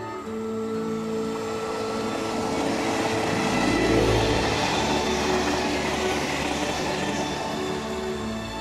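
Taiwan Railway tilting electric express train passing at speed: the rush and rumble of its wheels on the rails swells to a peak about four seconds in, as the cars go by close, then fades. Background music plays throughout.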